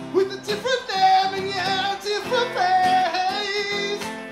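Live acoustic duo: sung vocals with long held, wavering notes over strummed guitars.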